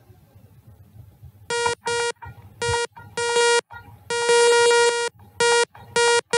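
Alert buzzer of a pedestrian and animal detection program: a buzzy beep that starts about a second and a half in and sounds in irregular bursts, mostly short beeps with one held for about a second. It signals that a pedestrian or animal has been detected on the road.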